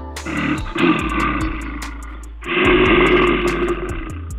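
A bear growling twice: two rough, drawn-out growls of about two seconds each, the second louder, over background music.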